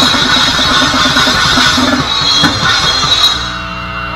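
Grindcore band playing live: very fast drumming over distorted guitar. The music stops abruptly about three seconds in, leaving a steady low ringing tone.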